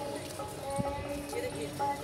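Indistinct voices and held tones, with a few light clicks or knocks, one about a second in.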